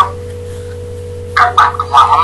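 A steady electrical hum with a faint constant tone under it, then a man's voice over a narrow, telephone-quality line starts about one and a half seconds in.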